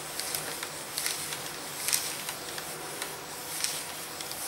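Steam iron sliding over baking paper as it fuses Pyssla plastic beads: a low, steady rustling with a few faint scuffs.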